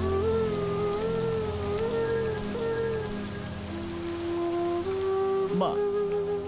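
Steady rain falling, under slow background music of long held notes that shift in pitch from time to time.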